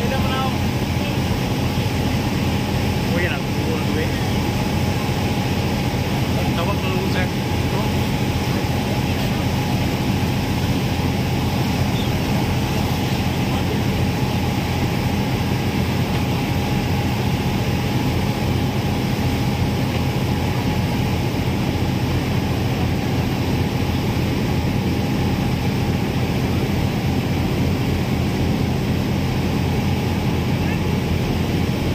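Passenger ferry's engines running with a steady low drone and a constant higher whine above it, heard from the open deck.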